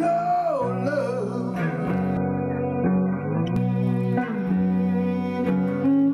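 Live band music with no vocals: an electric guitar and a bass line under a lead melody. The melody opens with a long held note that slides down, then settles into steady sustained notes.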